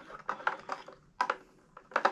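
A few light plastic clicks and taps, the sharpest about a second and a quarter in, from a variable frequency drive's casing being handled.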